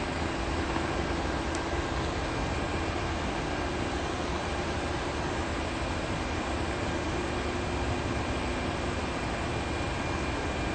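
Steady background noise of a large indoor space: an even hiss with a faint constant hum and no distinct events.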